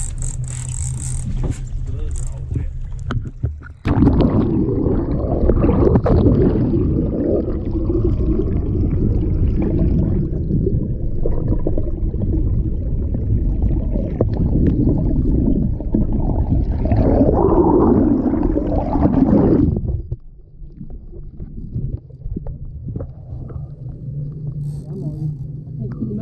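An action camera plunged underwater: a loud, muffled rush and gurgle of water over the camera housing that starts suddenly about four seconds in and cuts off about sixteen seconds later as it comes back out. Before and after, the boat's engine hums steadily at idle.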